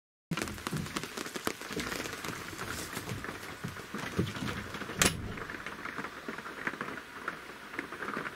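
Steady rain pattering on a camper's roof, heard from inside, as a dense crackle of small drops, with one sharp click about five seconds in.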